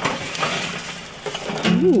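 Hot lump charcoal poured from a metal chimney starter onto a grill's charcoal grate, the lumps tumbling out with many small clicks that thin out as the pour ends.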